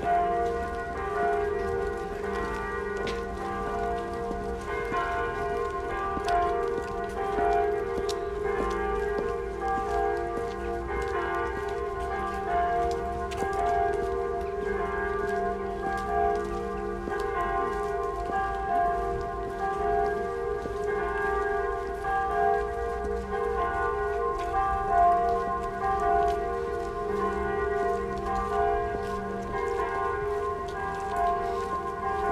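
Church bells ringing continuously, several bells sounding together with repeated strikes, tolling for a funeral procession.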